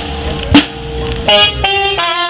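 Village brass band: two drum strikes and a single held brass note, then the horns come in together on a full chord about a second and a half in, moving to a new chord just after.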